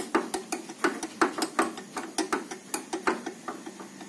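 Cell-holder shaft of a spectrophotometer being worked back into its socket in the side of the housing by hand, giving a run of quick, irregular clicks, about five a second.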